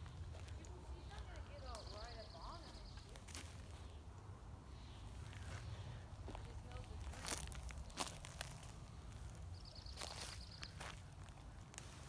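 Footsteps on a dirt and pine-needle forest floor, with scattered sharp clicks and a low rumble of wind or handling on the phone's microphone. A short high buzzing trill sounds twice, about two seconds in and again near ten seconds.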